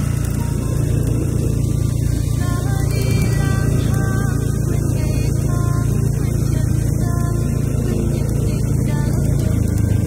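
Motorbike engine running steadily at cruising speed, a constant low drone with no revving.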